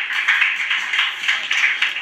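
Hands clapping in a quick run of short claps, sounding thin, with little low end.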